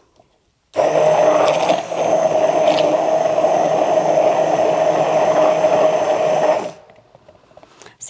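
Handheld stick blender running in a jug of torn paper and water, grinding it into pulp for homemade paper: a steady motor whine that switches on about a second in and cuts off about a second before the end.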